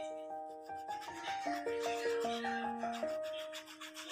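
Crayon rubbing back and forth on a colouring-book page in quick scribbling strokes, over a simple background melody of single held notes.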